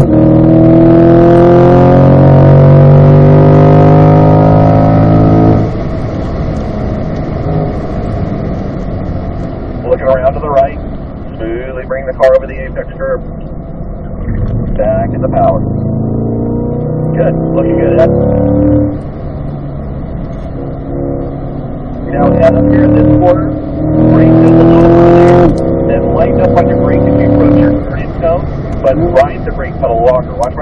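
The 2020 Corvette C8's V8 under full throttle, rising in pitch in third gear near the top of the rev range, then dropping off sharply about five seconds in. After a stretch of quieter running through the corner it pulls hard again with a rising pitch from about 22 seconds in, then drops off once more.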